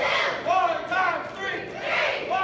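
A large group of children shouting together in unison, a chant of short, high-pitched calls repeated in a steady rhythm during a group exercise drill.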